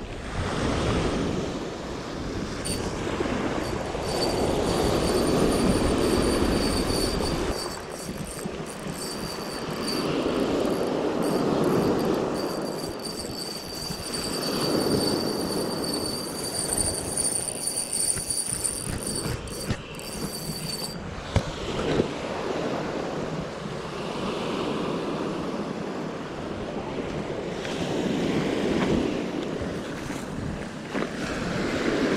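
Surf breaking and washing up a pebble beach, swelling and fading every few seconds, while a light spinning reel is wound in against a hooked white seabream. A thin high whine comes and goes from about 3 s to about 21 s into the fight.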